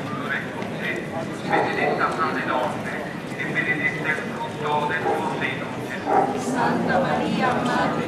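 Many people talking at once in an overlapping murmur of voices as a crowd walks along a stone-paved street, with footsteps on the cobbles.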